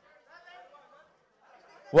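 Only speech: faint chatter of voices, with a man's voice breaking in loudly at the very end.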